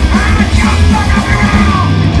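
Hardcore punk band playing live and loud: distorted electric guitar, bass and drums on a fast, even beat, with the singer yelling over it.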